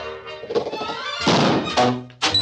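Orchestral cartoon music with a cartoon sound effect of a small outboard motor backfiring: a sudden, loud burst of noise a little over a second in.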